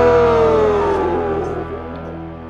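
Ending of a late-1970s punk rock recording: a held note slides down in pitch over about a second and a half above steady low notes, and the music fades out.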